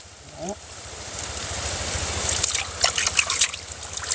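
Muddy water sloshing and trickling as an arm gropes about under a woven plastic sack in a shallow pool. The swishing swells about a second in and eases off near the end.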